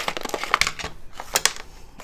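Torn-open paper toolkit pouch being handled and rummaged through: crinkling and rustling of the packaging, with a few sharp crackles, two of them louder than the rest.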